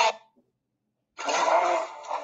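Soundtrack of a video clip playing back with music and voice, stopping and starting: it cuts off abruptly, there is about a second of silence, then a short burst of it plays and cuts off again.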